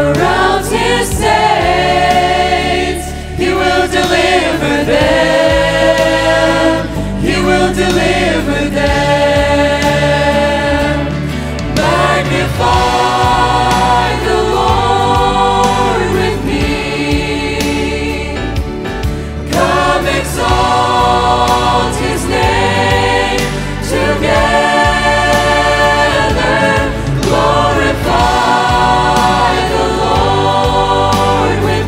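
Youth choir singing a gospel worship song together, with instrumental accompaniment holding sustained low bass notes.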